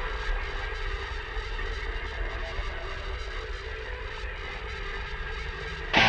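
A low, steady rumbling drone from a show-intro sound effect, with an even hiss above it, easing slightly in level.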